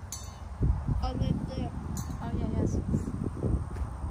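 Low, irregular rumbling on the phone's microphone as it is carried through the brush, starting about half a second in, with a few small clicks and faint voices behind it.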